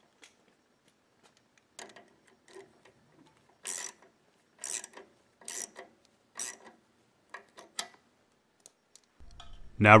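Socket ratchet clicking in short strokes, the loudest about once a second, as the 8 mm bolt on the clutch-cable stop is tightened.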